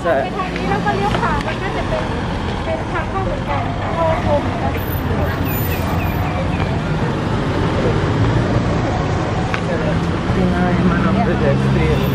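City street traffic: cars, a pickup and a van passing and running, with people's voices mixed in during the first few seconds. A vehicle's engine hum grows louder near the end.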